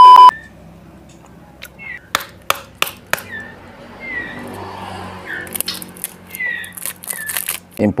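A loud, steady TV test-pattern beep cuts off a fraction of a second in. It is followed by repeated short, falling chirps and scattered sharp clicks from caged young white-rumped shamas (murai batu).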